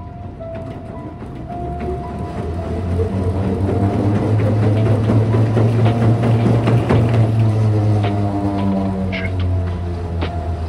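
Curved non-motorized treadmill's slatted belt running under fast sprinting footfalls, its hum growing louder over the first several seconds and easing near the end as the runner lifts his feet off the belt.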